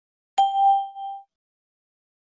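A single bright ding: one struck chime tone with a fainter higher ring, starting about a third of a second in and dying away within a second. It is a cue tone in a recorded listening exercise, sounded between two readings of a question.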